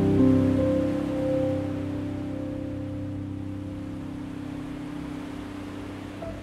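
Gentle solo piano music over a soft, steady wash of ocean waves. A chord struck at the start rings and slowly fades away.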